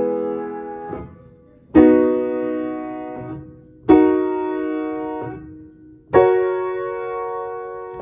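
Piano playing a chord progression of four held chords, struck about two seconds apart and each left to ring and fade: E major, B major, D-sharp minor and F-sharp major.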